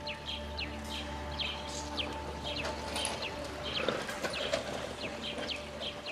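Small birds chirping in short, quickly repeated downward-sliding calls, over a low sustained background music drone that stops at the end.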